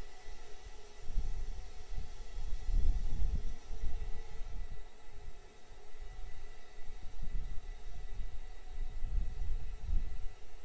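Outdoor launch-site ambience: a low, irregular rumble that swells and fades in gusts every second or so over a faint steady hiss, typical of wind buffeting an outdoor microphone.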